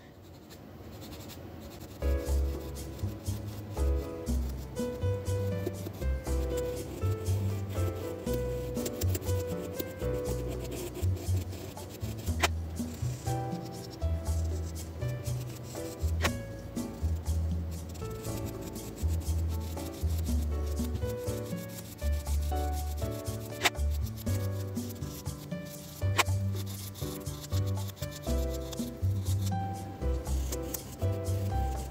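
A sanding stick rubbed back and forth along a small plastic model engine block, smoothing away its mould seam, with background music playing.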